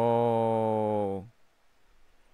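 A man's long, drawn-out 'ohhh' exclamation, held at one steady pitch and breaking off about a second and a quarter in.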